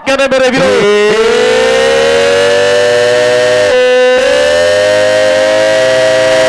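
A man's voice drawing out one long, high held shout that runs on straight from his speech. The pitch rises slowly, drops a step a little past the middle, then holds level.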